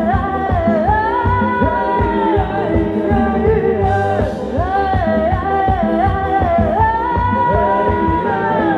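Live band playing ramwong dance music: a sung melody with long held, gliding notes over a steady drum beat.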